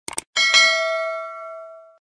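Subscribe-animation sound effect: two quick mouse clicks, then a single notification bell chime struck about a third of a second in, ringing with several tones and fading away by the end.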